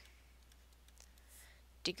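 Mostly quiet, with a few faint clicks of a stylus writing on a tablet about a second and a half in.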